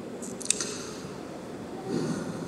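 A pause in a man's speech into a close handheld microphone: low room noise, with a single short mouth click about half a second in.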